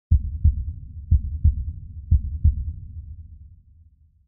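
Heartbeat sound effect: three deep double thumps, about a second apart, over a low rumble that fades away near the end.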